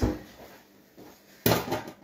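Kitchenware being handled: a knock at the start and a louder clatter about one and a half seconds in.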